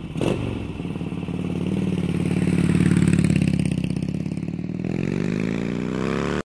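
Motorcycle engine running with a quick, even pulsing beat after a short knock at the start, growing louder toward the middle, then rising in pitch near the end as it is revved.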